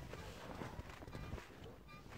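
Faint rustling of a blanket and handling noise from a phone held close under it, with scattered soft clicks.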